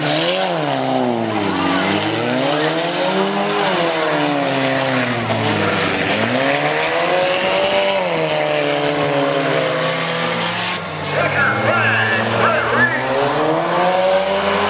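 Demolition derby cars' engines revving up and falling back over and over as the cars drive and ram on a dirt arena. People's voices join in over the engines near the end.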